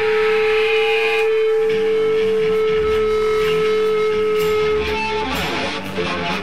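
Live rock band playing electric guitars, bass and drums. A single long note is held steady until about five seconds in, as the drums and bass come back in under it.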